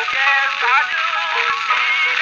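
Early acoustic recording from 1903 of a sung duet, with a singer finishing the word "true" and the music running on. Thin, narrow-band sound with surface crackle and a couple of sharp clicks.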